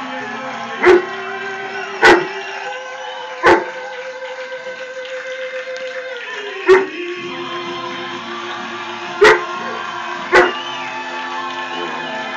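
A dog barks six times in single, sharp, loud barks, irregularly spaced, over music playing from a television.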